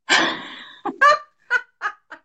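A woman laughing heartily: one long loud outburst, then a run of short bursts that grow fainter.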